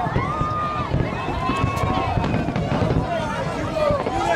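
Fireworks display going off steadily, a dense rumble of bursts with crackling. People's voices are heard over it, with drawn-out exclamations.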